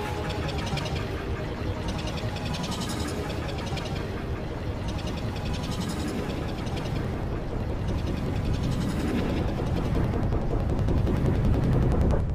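Continuous, dense din of many video soundtracks overlapping at once, a loud mash heavy in the bass with no single clear sound standing out.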